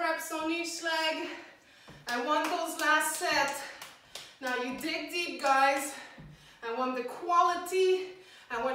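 Speech: a woman talking in short phrases with brief pauses between them.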